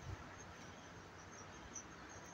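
Quiet room with faint high chirps scattered through it, and a soft low thump at the very start as a kitten paws and bites a tennis ball on a blanket.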